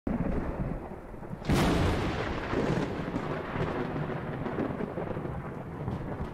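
Thunder-like sound effect for a logo intro: a low rumble, then a sharp crack about one and a half seconds in that rolls on and slowly fades.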